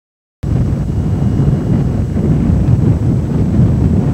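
Wind buffeting a camcorder microphone outdoors: a loud, low, gusting noise that cuts in suddenly about half a second in after a moment of silence.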